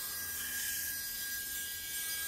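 Belt grinder running with no steel against the belt: a steady even hiss with a low motor hum and a thin constant whine.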